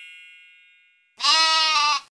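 The tail of a bright chime fading away, then a single sheep bleat of nearly a second, with a wavering pitch, starting about halfway through.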